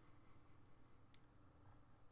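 Near silence: faint room tone with a low hum, and one faint tick about a second in.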